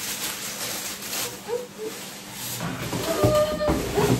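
Packaging rustling and crinkling as a parcel is opened and unwrapped, with a few soft knocks near the end.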